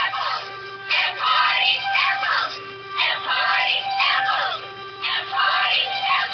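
Pop song with vocals playing on the radio, picked up by the webcam microphone.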